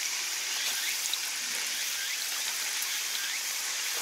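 Fuel pouring from a can's flexible spout into a combine's fuel tank filler: a steady rush of liquid.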